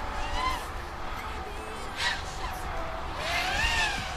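Brushless motors and propellers of an Emax Hawk 5 FPV racing quadcopter whining, the pitch rising and falling with the throttle: a short rise near the start and a longer swell and drop near the end, with a brief rush of noise about two seconds in.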